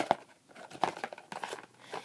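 Phone-box packaging rustling and crinkling as it is handled, with a sharp knock at the start.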